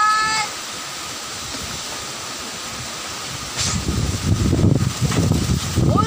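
Storm wind and heavy rain, a steady rushing hiss, with strong gusts buffeting the microphone from a little past halfway. A brief high pitched call sounds at the very start.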